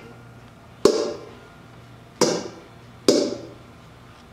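Three sharp open-hand slaps on a stainless steel bowl used as a drum, each with a short metallic ring. The first comes about a second in and the other two near the end, spaced less than a second apart. A faint low hum runs between them.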